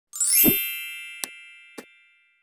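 Logo-intro sound effect: a quick rising shimmer into a bright ringing chime with a low hit, ringing down slowly. Two short clicks follow, about a second and a quarter and near the end, as the animated subscribe button and bell are clicked.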